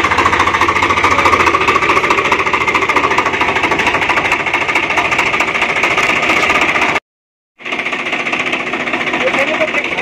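Swaraj 744 FE tractor's three-cylinder diesel engine running steadily with a loud, fast, even rattle from the tractor and its chain trencher attachment. The sound drops out completely for about half a second around seven seconds in, then carries on.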